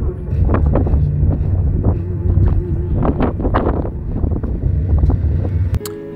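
Wind buffeting a phone's microphone: a heavy low rumble with repeated gusty blasts. It cuts off just before the end, when guitar music comes in.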